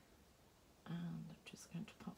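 A woman's voice murmuring under her breath: a held hum-like 'mmm' about a second in, then a few short, indistinct syllables.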